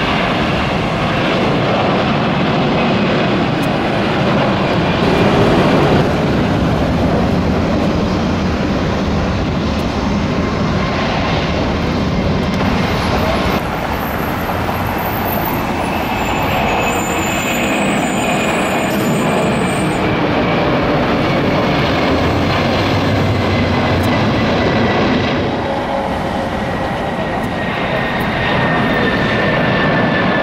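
Jet airliner engines at takeoff power as the aircraft climb out, first a four-engined Airbus A340 and then a three-engined McDonnell Douglas MD-11: a loud, steady engine noise with a few abrupt changes in level. Through the second half a high engine whine slowly falls in pitch.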